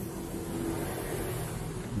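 Steady, low background rumble with a faint hum, with no clear starts or stops.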